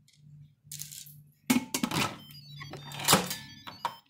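Instant Pot lid being set on the pot and turned to lock: a soft scrape, then several sharp metal clunks and clicks with a brief ring, the loudest about three seconds in, over a faint low hum.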